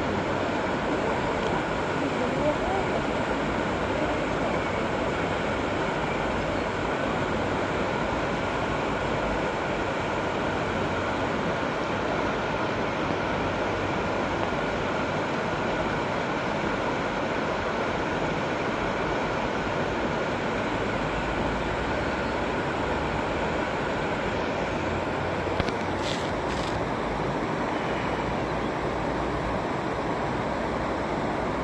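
Steady rush of river water spilling over a low weir, an even noise that does not change, with a brief click near the end.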